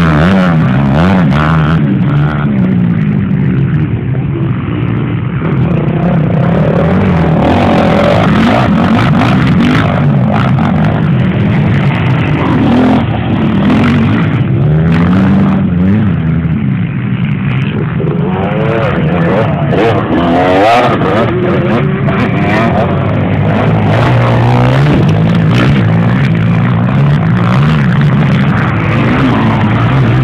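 Off-road enduro motorcycle engines revving hard and easing off over and over, their pitch rising and falling continuously.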